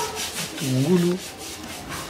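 Soft rubbing and scraping as sliced onion is handled and dropped into a pot of simmering cassava leaves. A short voice-like sound, sliding in pitch, comes about half a second to a second in.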